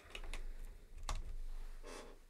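A few scattered sharp clicks and light knocks, like keys and objects handled on a desk, with a soft low sound near the end.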